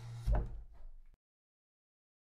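A short knock over a low hum, both fading out about a second in, then dead silence.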